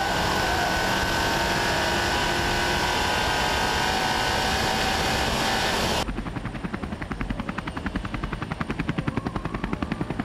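In-car sound of the Leon Cupra 280's turbocharged four-cylinder engine running hard at steady high revs, with road and tyre noise. About six seconds in it cuts abruptly to a helicopter's rotor chop, a rapid even beating.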